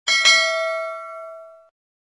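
Bell-like notification 'ding' sound effect from a subscribe-button animation. It rings with several clear tones and dies away over about a second and a half.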